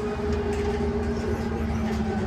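Bus heard from inside the passenger cabin while driving along: a steady hum from the drivetrain over low road rumble.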